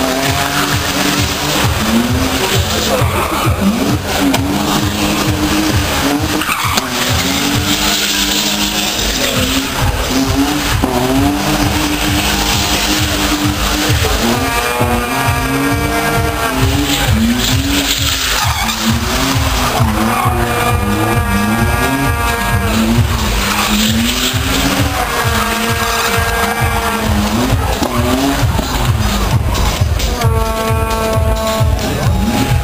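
A BMW E30 doing burnouts: the engine revs up and down again and again, every second or two, while the rear tyres squeal and smoke against the tarmac.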